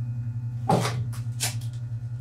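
Handling noise from a pair of chiropractic alignment shoes being picked up: a few short rustles and knocks, the first and loudest about two-thirds of a second in, over a steady low electrical hum.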